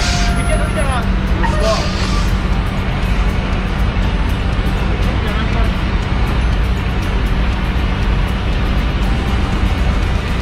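Diesel semi truck idling: a steady low drone, with faint voices in the first two seconds.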